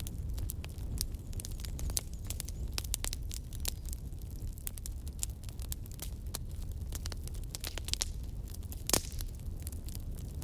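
Small campfire of sticks and twigs crackling, with irregular sharp pops and one stronger pop about nine seconds in, over a steady low rumble.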